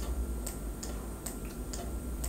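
Faint, regular ticking, about two ticks a second, over a low steady hum of room tone.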